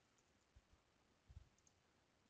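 Near silence, with a few faint computer keyboard keystrokes.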